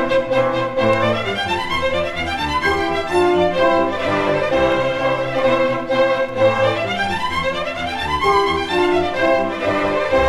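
A chamber string orchestra playing the opening Allegro of an 18th-century harp concerto in C major. Quick rising scale runs come twice over a sustained note.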